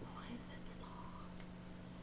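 A woman's faint whisper or breath between sentences, over a steady low hum.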